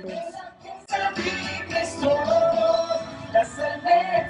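A vocal ensemble singing with backing music in a live stage performance. After a thinner first second the music fills out, with a long held sung note in the middle.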